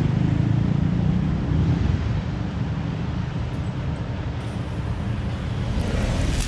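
City street traffic noise: a steady low rumble of passing and idling vehicle engines, easing slightly midway.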